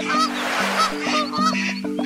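Cartoon duck quacks over a bouncy children's-song melody, with a short noisy whoosh during the first second.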